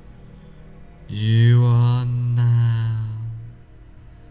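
A low male voice chanting one long, steady, mantra-like note, starting about a second in and swelling over soft meditation background music.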